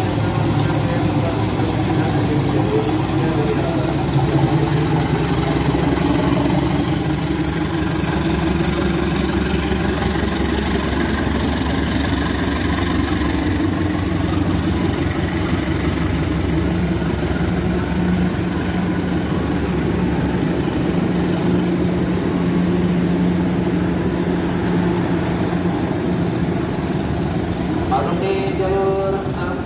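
Diesel locomotive engine running, a loud, continuous low drone, with a steady hum holding through the second half.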